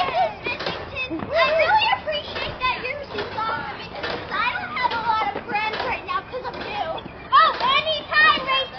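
Several girls' voices calling out and squealing over one another while they play, with high rising-and-falling cries throughout.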